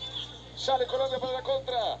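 A man's voice talking, quieter than the reactor's own speech around it, most likely the football match's TV commentary playing in the background, over a steady low hum.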